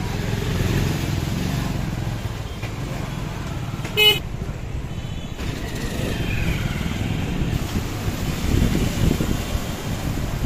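Busy street traffic heard from a moving vehicle: a steady rumble of engines and road noise, with one short vehicle horn toot about four seconds in, the loudest sound.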